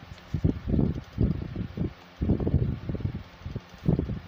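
Air from a ceiling fan buffeting the phone's microphone in irregular low rumbles, over the fan's faint steady whoosh.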